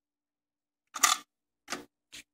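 Mechanical clicks from a Pioneer CT-F600 cassette deck's keys and eject mechanism. There is a short clunk about a second in and a lighter click near the end as the cassette door springs partway open. The door sticks and does not come fully open on its own.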